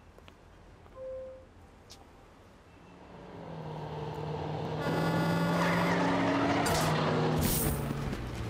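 An armored truck drives up and past on a city street, growing loud over a couple of seconds, with sharp hissing bursts near the end. A short beep sounds about a second in.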